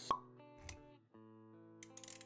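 Animated-intro sound effects over soft music: a sharp pop with a short ringing tone right at the start, then held musical notes with a brief low thump just before the music drops out for a moment and comes back.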